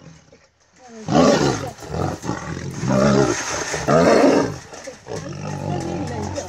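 Two tigers fighting, roaring and snarling in several loud surges starting about a second in, easing into lower growling near the end.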